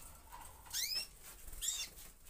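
Gloster canaries chirping in a flight cage: two short rising chirps about a second apart, the first the louder.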